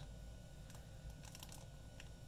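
Faint handling noise of a plastic model-kit sprue held in the fingers: a few light plastic clicks and ticks over a low steady room hum.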